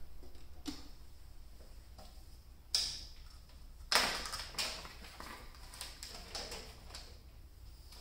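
Handling noise as alligator-clip test leads are unclipped from the cabinet wiring and moved. A few sharp clicks and rustles sound over a quiet room, the loudest about four seconds in.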